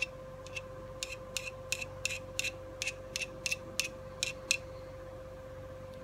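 A small hand-held sharpener drawn in quick, short strokes across the edge of a wood-lathe chisel at about 45 degrees, honing it: about a dozen light scrapes, roughly three a second, stopping about four and a half seconds in.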